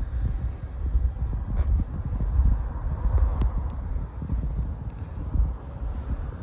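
Wind buffeting the microphone: an uneven low rumble that rises and falls, with a few faint clicks.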